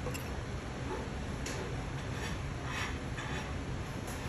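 A few faint, light taps and clicks as a small plastic glue bottle, its cap and a brush are handled on a stone-topped workbench, over a steady background hum.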